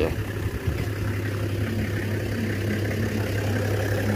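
A vehicle engine idling: a steady low hum.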